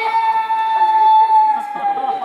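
A child's high voice holding one long wailing note that tails off near the end. It plausibly comes from the bear crying over the broken chair.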